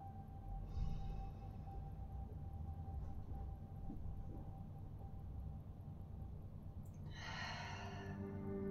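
Quiet ambient background music with a person's slow breathing: a soft breath about a second in and a fuller, sigh-like breath near the end.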